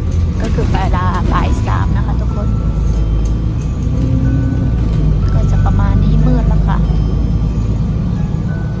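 Steady low rumble of a moving bus's engine and tyres heard from inside the passenger cabin. Music with a singing voice plays over it, most clearly near the start and again about six seconds in.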